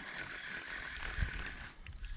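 Baitcasting reel being cranked during a retrieve: a steady mechanical whir that stops near the end, over low wind rumble on the microphone.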